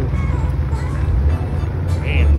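Ford Mustang GT's V8 engine and exhaust as the car drives away: a loud, steady low note, over background music.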